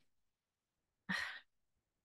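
Near silence broken about a second in by one short sigh, a breathy exhale of under half a second.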